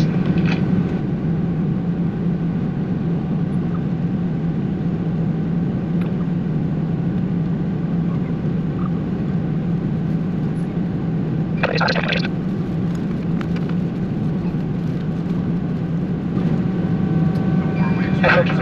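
Steady drone and low hum inside an Airbus A319 cabin parked at the gate before engine start: the aircraft's air conditioning and ventilation running. A short burst of another sound cuts in briefly about twelve seconds in.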